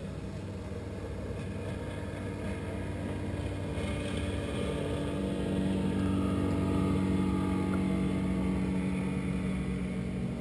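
A motorboat engine droning steadily as it passes, growing louder to a peak about seven seconds in, then easing slightly.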